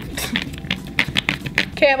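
Thick glue slime being kneaded and pressed by fingers in a small plastic case: a rapid, irregular string of sticky clicks and wet pops.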